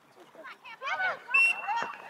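Voices shouting on a soccer field, with a short, high, steady tone about halfway through.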